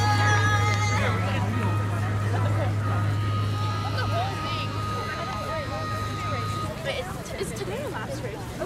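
Scattered chatter of spectators' voices over a steady low hum, which cuts off a little before the end together with a thin high tone.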